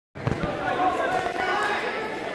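Voices of people calling out in a gym during a wrestling bout, with two dull thumps on the wrestling mat a fraction of a second in.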